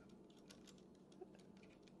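Near silence with a few faint, light clicks from hands working a metal stabilizing weight on the air rifle's under-rail while adjusting it.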